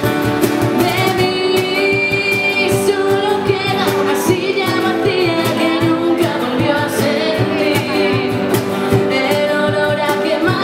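Live acoustic band: a woman singing over strummed acoustic guitars and a steady cajón beat.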